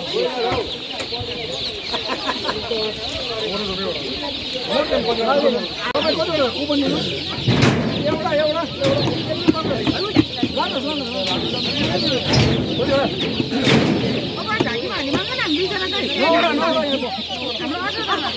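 A large mass of baby chicks peeping without pause, a dense high-pitched chirping, over a crowd of people talking, with a few knocks and clatters from baskets and boxes being handled.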